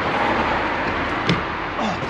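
Steady rushing noise of road traffic.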